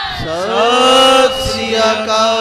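Several voices chanting Sikh gurbani together in long, drawn-out notes that slide upward near the start and are then held.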